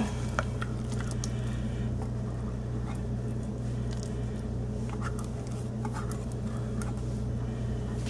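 Soft squishing and faint scraping as a silicone spatula scoops thick mayonnaise out of a metal measuring cup and onto pasta in a glass bowl, a few light scattered clicks. A steady low hum runs underneath.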